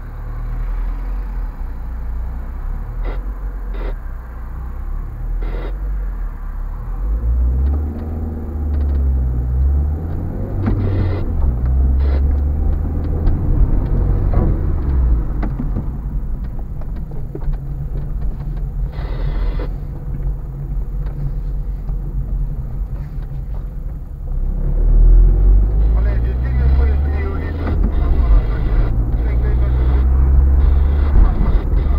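Car engine and road noise heard from inside the cabin as the car drives, the engine note rising and falling with speed. It gets louder about five seconds before the end.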